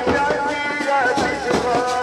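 Procession band music: a large bass drum and a smaller side drum beating steadily under a wavering, pitched melody line.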